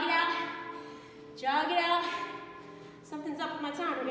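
A woman's voice in three phrases, over faint background music.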